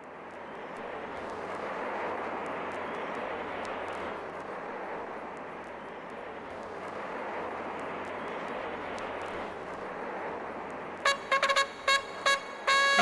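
A steady rushing noise, like wind or a passing aircraft, that swells and eases, with faint crackles over it. About eleven seconds in, short, sharp brass-like music stabs cut in.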